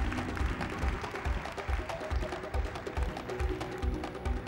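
Stage show music with a steady deep drum beat, a little over two beats a second, under sustained tones.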